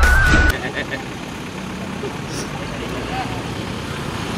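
A news intro jingle cuts off abruptly about half a second in, giving way to steady outdoor background noise with faint voices.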